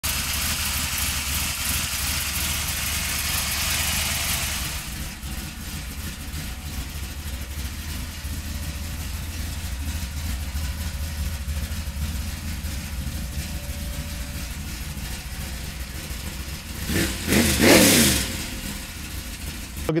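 V8 engine of a modified 1955 Chevrolet 150 idling steadily, with one throttle blip about three seconds before the end that rises in pitch and falls back to idle.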